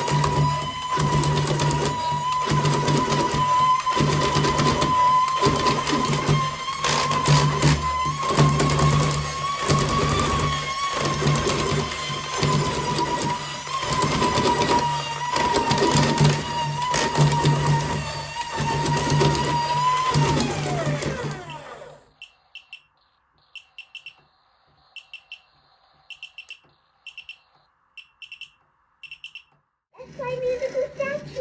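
RoboAlive Dragon toy's walking motor and gearbox running, driven from a bench power supply at about 4 volts: a steady whine with a regular clatter about every 0.7 s. About 21 seconds in, the whine drops in pitch and dies away as the motor stops, leaving only faint regular ticks.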